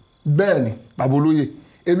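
Crickets chirping steadily in the background, a high, evenly pulsing trill, under a man's speech.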